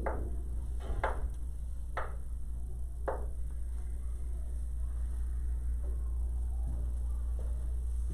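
Chalk tapping on a blackboard four times, about a second apart, as points of a graph are marked, over a steady low hum.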